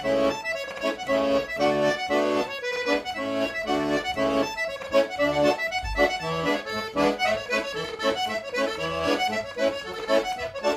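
Piano accordion played solo: a folk tune with the melody on the keyboard over a regular bass-and-chord accompaniment in a steady rhythm.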